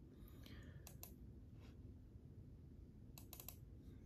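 Near silence with a few faint clicks at a computer: a couple in the first second, then a quick cluster of three or four a little past three seconds.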